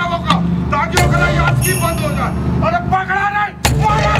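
Loud shouted voices over a steady low drone, with a couple of sharp booming hits in the first second. The sound dips and cuts off abruptly shortly before the end.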